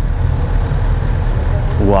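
Sport motorcycle engines idling, a steady low rumble.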